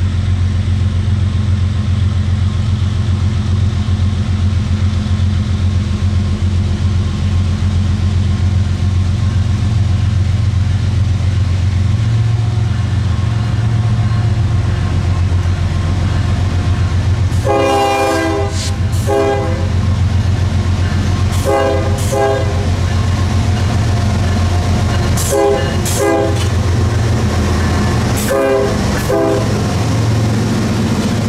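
Norfolk Southern diesel freight locomotives approach with a steady low engine drone, then sound the air horn four times from a bit past halfway: one long blast of about two seconds, then three shorter ones.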